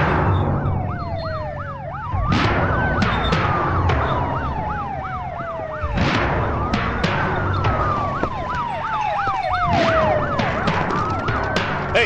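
Vehicle sirens on an approaching convoy, switching between a slow wail that rises and then falls over about three seconds and a fast up-and-down yelp, about every four seconds. Sharp hits and a low rumble run under them.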